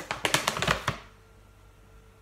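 A quick run of light plastic clicks and rattles from a clear plastic shaker tub and its powder scoop being handled, stopping about a second in.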